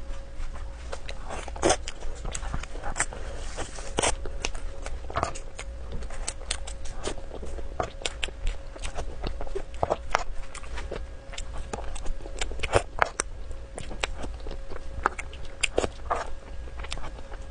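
Close-miked eating of a whipped-cream cake: a steady run of short, irregular wet mouth clicks and smacks as soft cream and sponge are chewed, over a faint steady hum.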